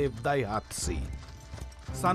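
Hooves clopping at a walk under soft background music, after a single spoken word at the start.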